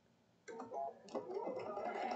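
Sewing machine starting up about half a second in and stitching slowly, a faint ticking that grows louder as the needle runs through fabric and the paper foundation of a paper-pieced block.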